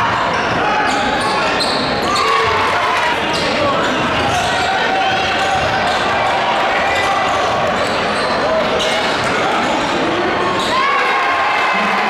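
Live basketball game sound in a gym: a crowd's voices and shouts over a steady hubbub, with a ball bouncing and scattered knocks on the court.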